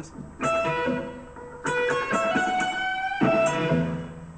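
Electric guitar, Les Paul–style, playing a short blues lead phrase on the top strings: notes at the 12th fret of the high E and B strings, the finger rolled across the two strings. The notes sustain and ring in two groups before fading near the end.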